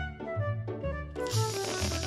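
Bouncy background music with a pulsing bass line; about a second in, a loud breathy hiss joins it.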